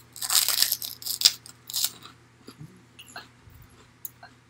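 A fried pork rind (Baken-Ets pork skin) spread with pumpkin seed butter being bitten and chewed: crisp crunching for about the first two seconds, then quieter chewing.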